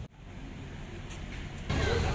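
Steady low rumble of motor-vehicle engine noise. It drops out for a moment at the start, then returns, and a man's voice begins near the end.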